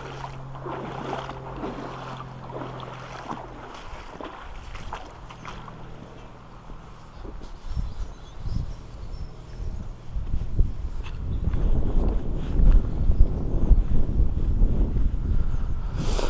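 Wind rumbling on the microphone while walking outdoors in wellies, with a faint steady low hum in the first few seconds; the wind rumble grows louder in the second half.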